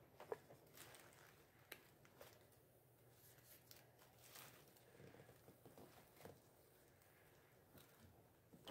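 Near silence, with faint rustling of tissue paper and a few small clicks as hands push a wooden dowel down into a tissue-paper centerpiece.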